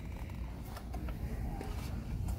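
Low steady background rumble with a few faint light knocks and rustles as a pan set in a cardboard sleeve is handled.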